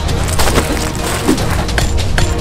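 Dense crackling and crunching with a few sharper cracks, over a steady low bass.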